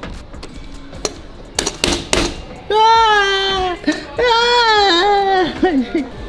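A few sharp clicks, then two long, high, drawn-out wordless vocal cries, the second one longer and dropping in pitch at its end.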